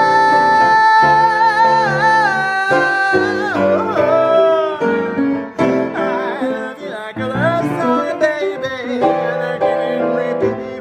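A woman singing to her own jazz piano accompaniment on a grand piano: a long held high note with vibrato for the first few seconds, then quick sliding vocal runs over swung piano chords.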